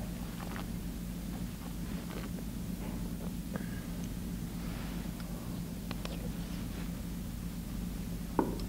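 Steady low room hum with scattered faint clicks and soft handling noises from a metal can of green beans being handled during a quiet tasting.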